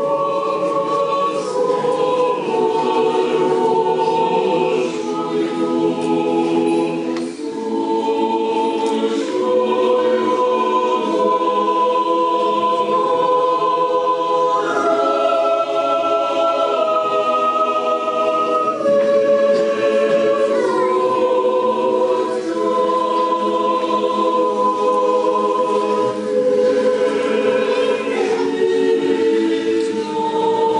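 Church choir singing an Orthodox liturgical hymn a cappella, in slow chords held for a second or more before each change.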